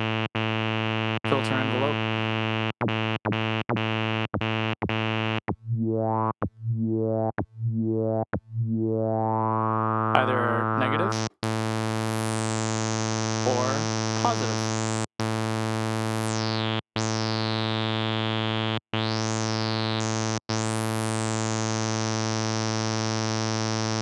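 Native Instruments Monark, a Minimoog-style software synth, playing a low bass note again and again while the filter envelope's contour amount is changed. A run of short, plucky notes gives way to the filter opening up; then each note starts with a bright, resonant filter sweep that falls away.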